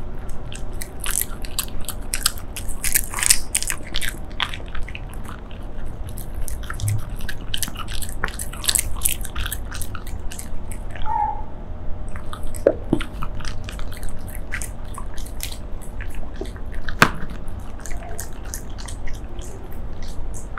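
Shiba Inu chewing and biting shredded squid-and-meat roll treats, close-miked: a steady run of quick, sharp chewing clicks, with a short lull about halfway through.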